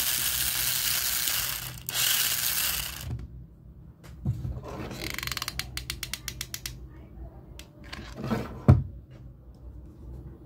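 Small plastic gearbox DC motors of a toy car whirring loudly in two runs, then a rapid, even clicking of gears, followed by a couple of handling thumps.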